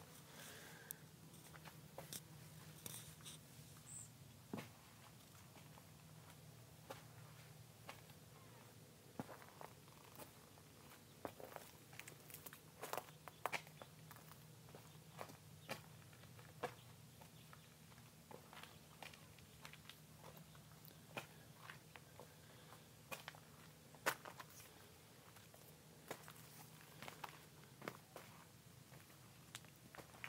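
Near silence: a faint steady low hum with scattered soft clicks and taps at irregular intervals, handling noise from fingers shifting on a handheld Ricoh 360 camera.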